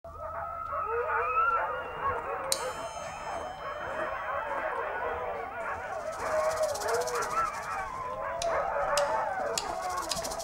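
A chorus of many overlapping, gliding howls, like a pack of dogs howling, with a faint high electronic tone entering a couple of seconds in.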